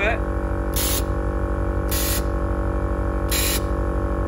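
An air ride compressor hums steadily while it fills the tank. Over it come three short hisses of air, about a second apart, as the solenoid valves of the air-suspension valve block open at button presses on the controller.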